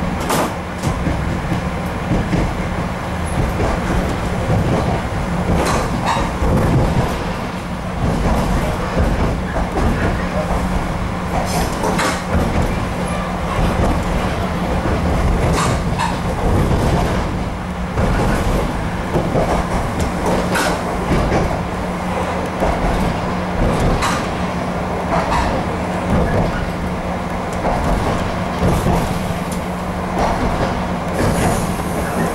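RA2 diesel railbus running along the line, heard from inside the passenger car: a steady rumble with a constant low hum. Sharp clicks of the wheels over rail joints come every few seconds.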